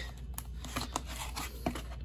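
A comic book being slid and lifted out of a cardboard mailer box: soft scraping and rustling of the book against cardboard, with a few light knocks.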